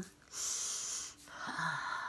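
A woman's long breathy exhale, then a second, softer breathy sigh with a brief touch of voice, as she enjoys a scalp massage.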